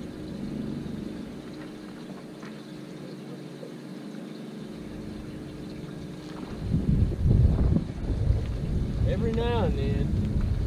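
A steady low hum, then from about seven seconds in, loud gusts of wind buffeting the microphone, with a short pitched call near the end.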